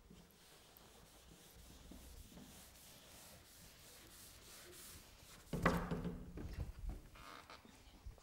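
A hand-held eraser rubbed back and forth across a chalkboard, wiping off chalk writing: a faint, steady scrubbing that grows louder and heavier about five and a half seconds in.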